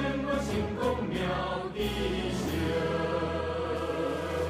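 Choral music: voices singing long held notes over shifting chords.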